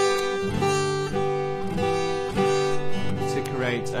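Yamaha acoustic guitar strummed on a G chord held with the third and little fingers, with first-finger hammer-ons adding melodic notes over the ringing chord.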